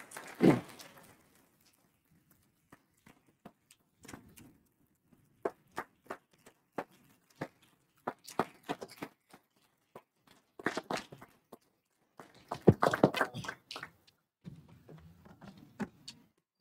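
Applause from a small group in a meeting room, picked up faintly as separate hand claps that thicken into fuller bursts about ten and thirteen seconds in. A few knocks and low rustling follow near the end.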